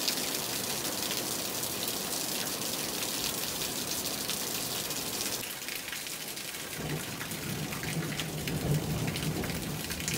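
Steady rain falling, with water streaming off a roof edge. About seven seconds in, a low rumble of distant thunder joins the rain.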